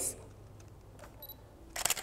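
Canon DSLR shutter releasing once near the end, a quick mechanical clack of mirror and shutter. A faint short high beep comes about a second in.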